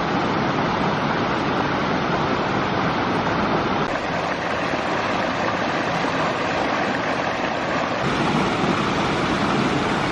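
Rushing water of a rocky mountain stream cascading over stones, a steady noise whose character changes abruptly about four seconds in and again about eight seconds in.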